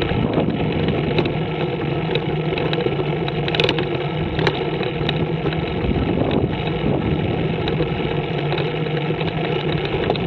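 Scorpion trike's engine running steadily at an even cruising speed, with road noise throughout and a few brief knocks a few seconds in.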